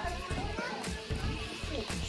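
Indistinct chatter of a group of people, a child's voice among them, over faint background music.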